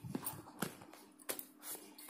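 A few faint knocks and brushes from a hand handling a pair of tan leather slip-on shoes on a woven mat.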